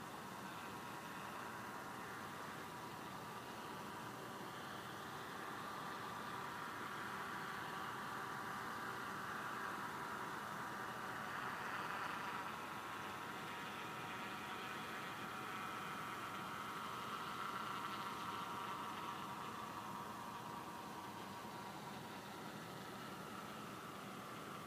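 Distant mini crop-spraying helicopter droning faintly, its engine and rotor hum swelling and fading as it moves, loudest about halfway through and again about three-quarters of the way through.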